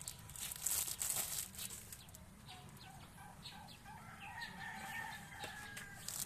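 Thin plastic bread bags crinkling and rustling as wrapped rolls are handled, loudest in the first second and a half. A rooster crows in the background through the second half, with one long drawn-out note near the end.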